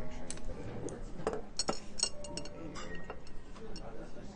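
Light clicks and clinks of tableware, such as chopsticks, ceramic plates and glass, as a table is handled: a dozen or so short ticks, most of them bunched in the middle seconds.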